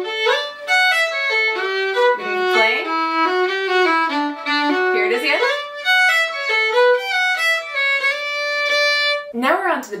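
Solo fiddle playing a lively tune, a quick run of separate bowed notes that stops a little before the end.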